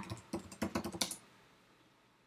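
Computer keyboard being typed on: a quick run of keystrokes that stops a little over a second in.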